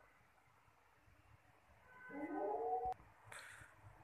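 A short animal call about halfway through, rising in pitch and lasting under a second, cut off by a sharp click. A brief high hiss follows.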